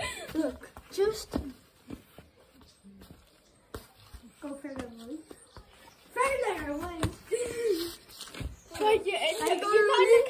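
Boys' voices: laughing and unclear calls, loudest in the second half.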